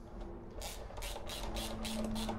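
Socket ratchet turning in the 17 mm front spindle bolt of a BMW R1250GS: a quick run of clicking ratchet strokes, about five a second, starting about half a second in.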